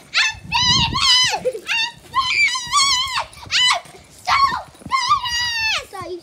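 A dog whining in a quick series of high-pitched whines, about ten in six seconds, several dropping in pitch at the end. A low rumble about a second in.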